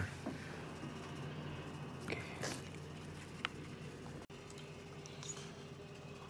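Steady low hum of a microwave oven running, with a faint click or two of a metal fork on the plastic dinner tray.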